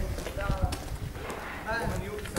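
Hurried footsteps knocking on a paved alley, with men's voices calling out.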